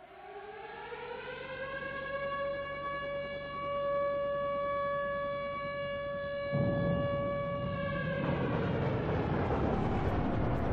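Recorded air-raid siren from the song's intro, played back as the backing track. It winds up in one rising wail and levels off into a steady howl. A rushing noise swells in under it about two-thirds of the way in, and the siren fades out just before the end.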